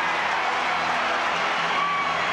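Ballpark crowd cheering a home run, an even, unbroken wash of noise, with music holding steady notes underneath.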